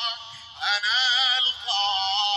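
A solo singing voice holding long, wavering notes, with a brief break in the first half-second before the next phrase starts.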